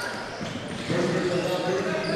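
A basketball being dribbled on a hardwood gym court over the hall's background noise. From about a second in, a commentator's voice holds a steady wordless sound.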